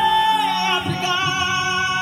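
Live singing over backing music, with the singer holding long, slightly wavering notes.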